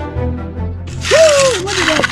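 Background music, then about a second in a loud scraping hiss of a steel hand edger drawn along the edge of a wet concrete slab, with a person's voice over it.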